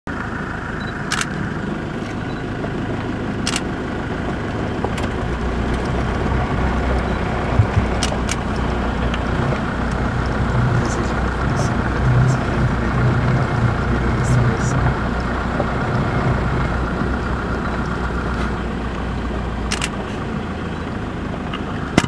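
Off-road safari vehicle's engine running steadily at low revs, a continuous low hum that swells a little in the middle, with occasional short sharp clicks.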